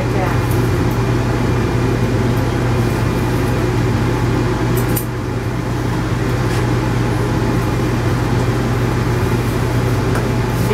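Steady machine hum with a strong low drone and a little hiss above it, like an air conditioner or fan running, with a few faint clicks.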